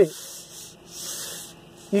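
A hand rubbing over the steering wheel rim: a soft, scratchy rustle that swells briefly in the middle.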